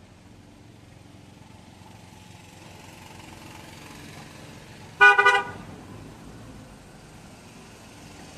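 A car horn gives a short double toot about five seconds in, the loudest thing here, over a steady low rumble of street traffic.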